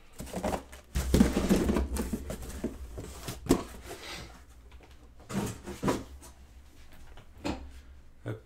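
Boxes of trading cards being slid out of a cardboard case and set down on a table: cardboard scraping and rustling with dull thuds, a sharp knock about three and a half seconds in, then a few softer knocks.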